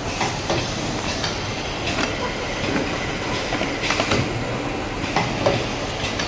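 Automatic two-head servo liquid filling machine and its bottle conveyor running, a steady mechanical rattle with scattered clacks of plastic detergent bottles being handled.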